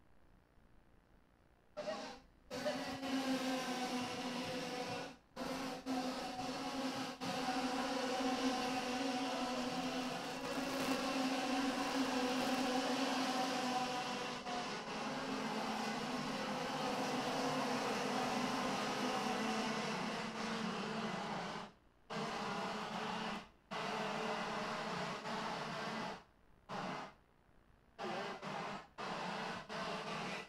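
Racing karts' IAME X30 125 cc two-stroke engines running at speed, several engine notes overlapping and drifting in pitch as the karts pass. The sound is near silent for the first couple of seconds and then drops out suddenly several times.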